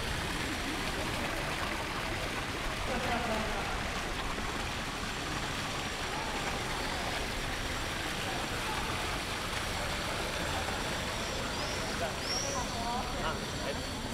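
Steady wash of outdoor noise with faint voices of people nearby, and a brief high chirp near the end.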